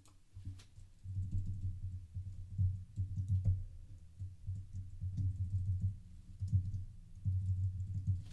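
Typing on a computer keyboard: an irregular run of keystrokes, with a few sharper clicks among them.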